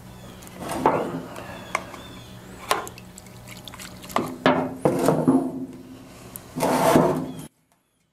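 A metal can of premixed two-stroke fuel handled and tipped, the fuel sloshing inside in several short bursts, with a bunch of them around the middle, over a steady low hum. The sound cuts off suddenly near the end.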